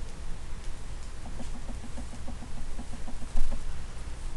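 Felt-tip marker writing on paper, squeaking in a quick run of short pips, about seven a second, for a couple of seconds in the middle.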